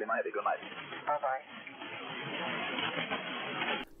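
A man's voice from a VOLMET aviation weather broadcast received on shortwave single sideband, thin and band-limited, with static. The voice stops about a second and a half in, leaving steady band-noise hiss.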